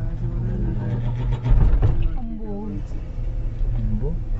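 Cable car gondola running with a steady low hum and rumble, swelling louder about a second and a half in, with passengers' voices talking in the cabin over it.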